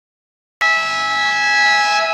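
Basketball scoreboard buzzer sounding one loud, steady, buzzy horn tone that starts abruptly about half a second in, ringing in the large gym hall.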